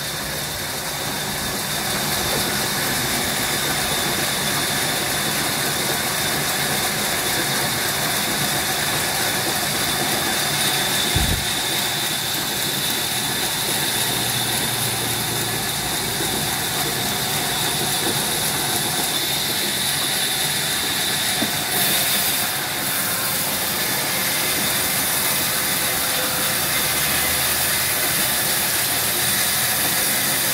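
Vertical band sawmill running, its blade ripping lengthwise through a long squared timber beam: a steady hiss with a high tone over it. A single low thump about eleven seconds in.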